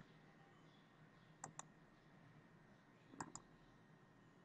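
Computer mouse button clicks in quick pairs, one pair about every second and a half, against near silence; each pair places a column on the drawing.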